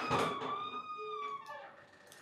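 Door hinge creaking as the door swings open: one long squeak of about a second and a half that drops in pitch at the end.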